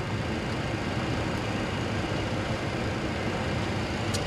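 Steady cockpit background noise in a parked Boeing 737-800: an even rush of ventilation and equipment running, heaviest in the low end, with nothing else standing out.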